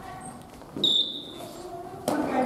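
Badminton play echoing in a gymnasium: about a second in, one sharp hit with a brief high ringing squeak that fades within half a second.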